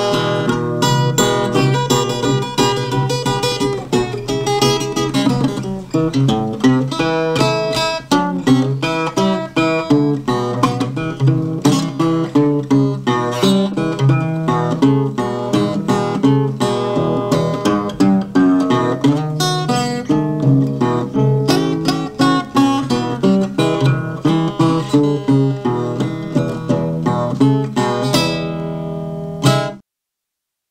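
Acoustic guitar playing a blues instrumental passage, picked notes over steady bass notes. It ends on a final chord that rings for about a second before the recording cuts off.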